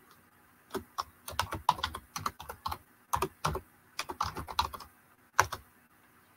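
Computer keyboard typing: quick runs of keystrokes in several short bursts with brief pauses between them.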